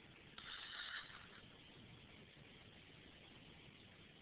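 Near silence: room tone, with a faint, brief hiss about half a second in.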